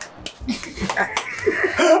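A man laughing breathily and wheezily in short, broken bits between lines of speech.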